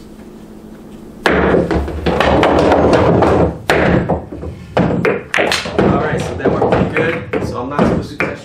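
Pool balls and cue on a pool table. A sharp knock comes about a second in, then about two seconds of loud continuous clatter, then a string of separate knocks and clicks.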